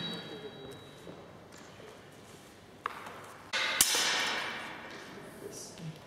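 Steel training longswords striking each other: a light click near three seconds, then a louder blade-on-blade clash that rings on and echoes round a large sports hall.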